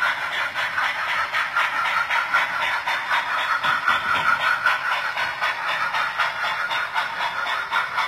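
Steam sound decoder in an HO scale brass steam locomotive playing a rapid, even chuff through the model's small speaker as the engine runs along the track.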